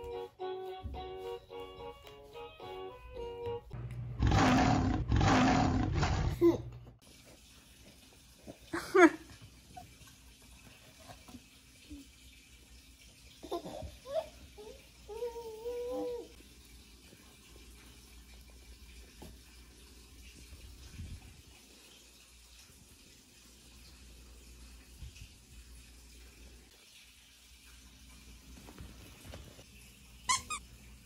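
Soft background music with plucked notes for the first few seconds, then a loud rough noise in three surges lasting about two seconds. After that a toddler makes a few short high vocal sounds, a squeal and brief babbling, over quiet room tone.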